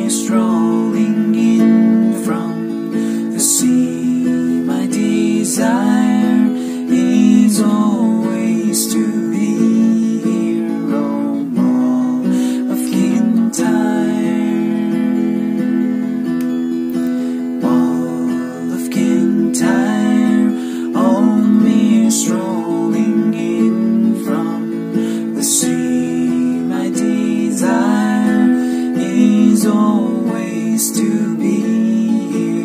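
Music: a strummed acoustic guitar over sustained low backing notes.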